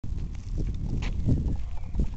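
Footsteps on a gravel dirt track, a few uneven crunches over a steady low rumble on the microphone.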